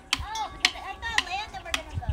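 Metal-tube wind chime struck with a wooden stick: four sharp knocks about half a second apart, each with a faint ringing after it.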